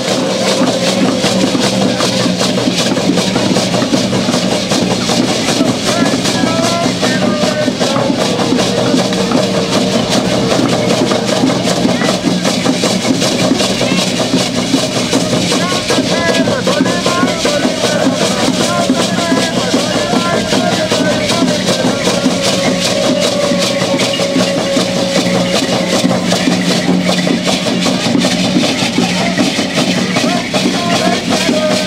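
Ceremonial dance percussion: hand drums beating with the continuous shaking of dancers' rattles, over steady voices and a held, wavering tone.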